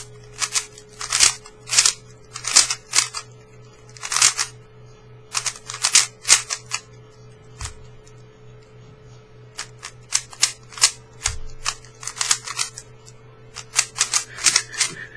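Moyu Aolong GT 3x3 speedcube being turned fast by hand: quick runs of sharp plastic clicks and clacks as the layers snap round. The runs come in irregular bursts with short pauses between them.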